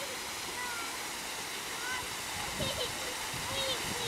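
Low ground-level fountain jets spurting up through a metal floor grate, giving a steady hiss of spraying and splashing water.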